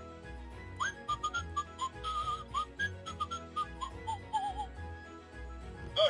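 Hey Duggee Smart Tablet toy playing a short whistled tune of quick sliding notes over a steady low musical backing. The notes start about a second in and die away near the five-second mark.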